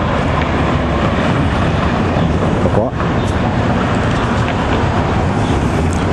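Loud, steady city street traffic noise: cars running and passing on the road.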